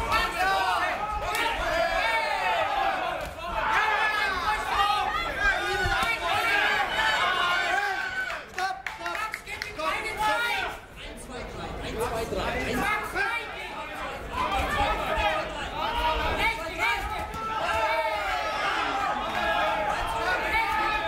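Crowd of fight spectators shouting and calling out, many voices overlapping at once, with a brief lull about eleven seconds in.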